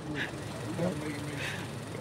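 Low, indistinct talk over a steady outdoor background hum.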